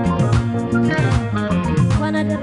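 Live band playing an instrumental passage: electric bass, guitars and drums with a steady beat.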